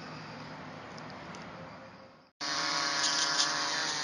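A faint hiss fades out. Then, after a cut a little past halfway, comes the steady buzz of a quadcopter's electric motors and propellers hovering in loiter mode, a stack of even tones over a whooshing wash.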